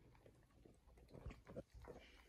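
A dog gnawing on a bone with its head inside a plastic recovery cone, struggling to get a grip on it: faint scattered crunches and clicks, a few stronger ones in the second half.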